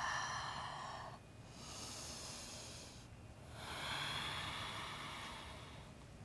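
A woman breathing slowly and deeply in and out while holding downward-facing dog: three soft breath sounds, each a second or two long.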